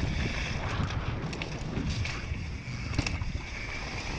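Wind buffeting an action camera's microphone as a mountain bike descends a dirt trail at speed, tyres rumbling over leaf-covered ground while the chain and frame rattle in short clicks. One sharper knock about three seconds in.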